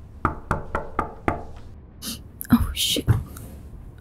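Five quick knocks on a door, about four a second, followed about a second later by a short stretch of hiss and brief voice-like sounds.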